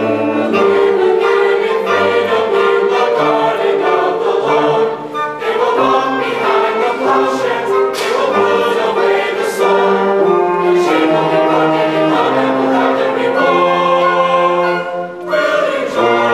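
Large youth choir singing sustained chords in harmony, with a school concert band of saxophones and brass accompanying. The sound dips briefly twice and comes back loud and full just before the end.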